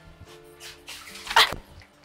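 Soft background music, then a child's short, loud excited cry about a second and a half in.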